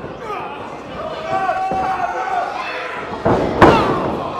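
Voices shouting, then two heavy impacts in a wrestling ring near the end, the second the loudest, as wrestlers hit the ring.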